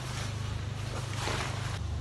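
Fabric car cover rustling and swishing as it is dragged off a car, the strongest swish about a second in, over a steady low hum.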